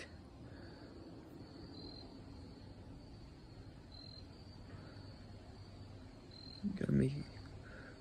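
Quiet, with a faint steady high-pitched tone throughout and a short murmur from a voice about seven seconds in.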